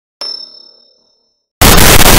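A single metallic clang with a high ringing tone, fading out within about a second in dead silence. Loud harsh noise cuts back in abruptly near the end.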